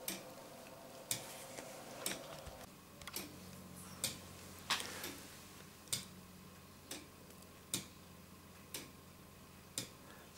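A Meccano clock's foliot and verge escapement ticking, about one sharp tick a second and slightly uneven, as the bolt teeth of the escapement wheel are caught and released by the spring-clip pallets.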